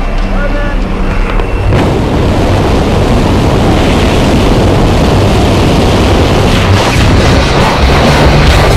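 Music stops abruptly about two seconds in, giving way to a loud, steady rush of wind and plane noise at the open jump door of a skydiving aircraft, with a voice shouting over it.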